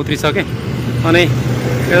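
Short bits of a man's speech over the steady low hum of a motor vehicle's engine running.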